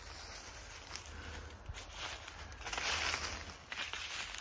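Footsteps on dry fallen bamboo leaves, rustling and crackling underfoot, loudest about three seconds in.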